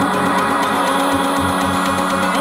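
Loud dance music from a live DJ set, played over a club sound system: held chords over bass notes.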